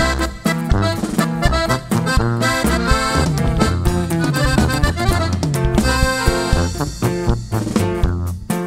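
Instrumental break of a Mexican regional norteño song: an accordion leads the melody over guitar, a low bass line and drums.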